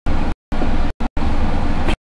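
Steady low rumbling background noise with no clear source, cut off abruptly to silence several times for a fraction of a second each.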